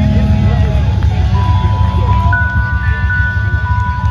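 Live band music: low bass notes under long held high notes that come in about a second and two seconds in, with people talking over it.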